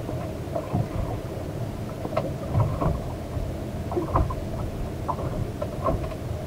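Wind rumbling and buffeting on the microphone aboard a small open boat, with small waves lapping and slapping against the hull in short irregular splashes.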